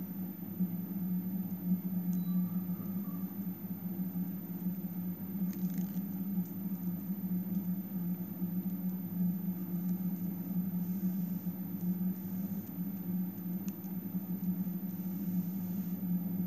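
A steady low background hum, with a few faint small clicks and rustles from beads and a needle being handled.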